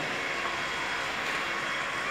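Steady background noise with no distinct events, like a workshop's running machinery.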